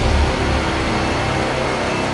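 Sound effect for an animated logo: a dense rushing whoosh with a deep rumble underneath, slowly fading.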